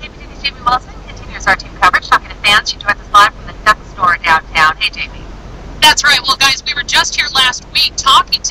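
A news reporter's voice talking, with a short pause about five seconds in.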